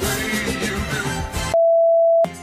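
Music with a beat plays, then about one and a half seconds in it is cut off by a loud, steady single-pitch test-tone beep, the tone that goes with a TV colour-bar test card.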